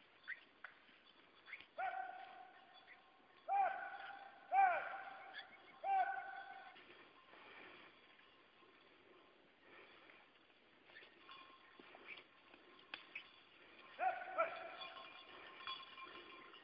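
Several long, steady, held calls at one pitch, out in the open, like a field-trial handler's hollers or whistle to bird dogs: a cluster of four about two to seven seconds in and two more near the end.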